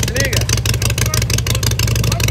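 Harley-Davidson motorcycle V-twin engine running steadily, with an even rapid pulse.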